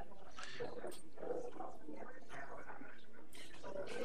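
Indistinct background talk: people in the meeting room talking quietly, too unclear to make out words.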